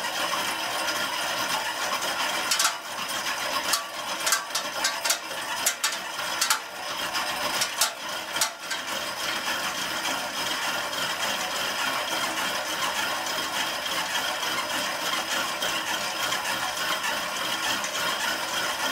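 Spinning bike's flywheel and drivetrain whirring steadily under hard pedalling through a work interval, with a run of sharp clicks and knocks from about two to nine seconds in.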